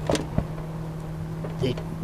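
Sharp plastic click, then a lighter knock, as the plastic coolant overflow reservoir is handled and worked loose from its mount, over a steady low hum.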